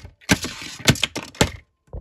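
A hard plastic Transformers figure being slammed onto a tabletop: a quick run of five or six sharp cracks and knocks with a rattling smear between them, like something being smashed. One more knock comes near the end.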